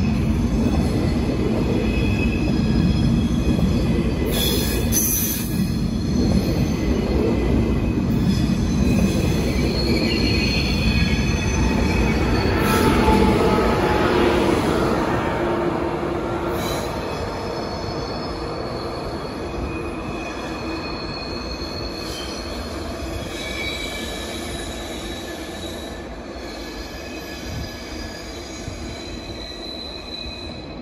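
Deutsche Bahn ICE 1 high-speed train running out of the station, a loud rumble with several high wheel squeals. The sound fades steadily over the second half as the train draws away.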